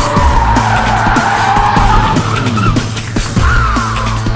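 Car tyres squealing as a Lamborghini Murciélago slides on tarmac: one long wavering squeal, then a shorter second squeal near the end. Music with a steady beat plays underneath.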